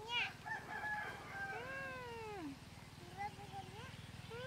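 Baby monkey calling in high, thin cries: a few short calls, then one long call that falls in pitch about two seconds in, and softer, lower calls near the end.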